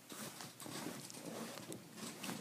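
Faint rustling and scattered small taps as a person shifts his position on a bed, moving the camera and bedding.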